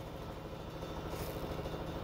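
A steady low mechanical hum, like a motor running in the background, with a fast, even pulse to it.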